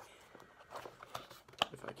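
Hands handling a small cardboard mailer box while trying to open it: scattered light taps and scrapes, with a sharper click a little before the end.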